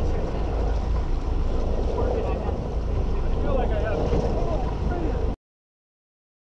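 Sportfishing boat's engines running steadily under way, a low rumble with faint voices over it; the sound cuts off suddenly near the end.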